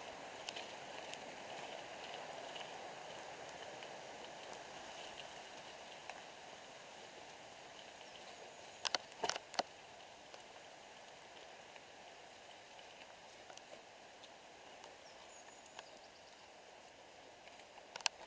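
Mountain bike rolling down a gravel and rocky forest trail: steady tyre and wind noise, fading a little, with a short clatter of several knocks about nine seconds in.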